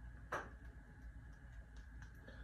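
A single sharp click about a third of a second in, then a few faint ticks, over a steady faint hum.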